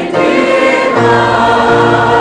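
Large mixed choir of men and women singing together in held, sustained notes.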